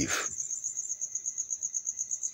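Cricket chirping steadily in a high-pitched, rapid, even pulse, about seven pulses a second.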